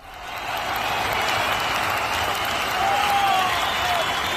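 Crowd applause, swelling in over the first half second and then holding steady.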